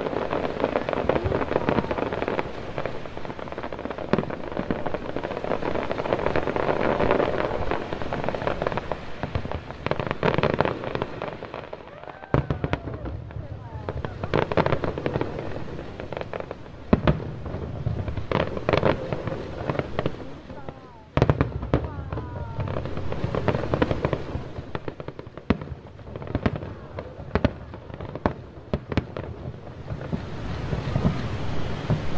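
Aerial fireworks bursting: a dense run of bangs and crackling for the first dozen seconds, then thinning out into separate sharp bangs.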